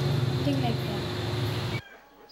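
A girl speaking softly over a loud, steady background hiss and hum. The sound cuts off abruptly near the end and gives way to much quieter ambience.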